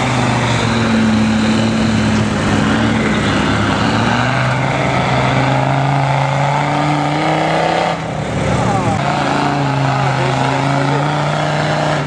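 Off-road 4x4 engine running under load as the vehicle climbs a muddy bank. The revs rise and fall slowly, with a brief dip about eight seconds in.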